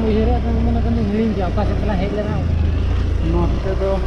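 Steady low rumble of wind and road noise from riding a motorbike, with a person talking over it.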